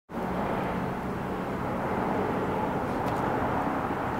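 Steady outdoor traffic noise: an even rumble and hiss of passing vehicles in the distance, starting abruptly at the opening.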